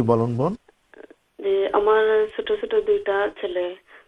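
A voice speaking over a telephone line, thin and cut off above the voice's middle range, with a brief pause about a second in.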